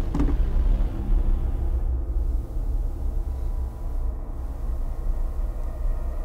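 A low, steady rumble under the misty egg reveal, with a brief metallic knock and ringing right at the start as the container lid comes off.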